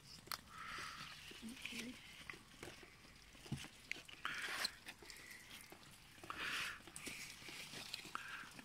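Strawberry leaves rustling as a hand moves through the plants: a few short, faint brushing sounds, the clearest about four and a half and six and a half seconds in.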